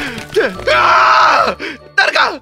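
A man's voice yelling a long, drawn-out 'uwaaaa' in horror, falling in pitch, over background music.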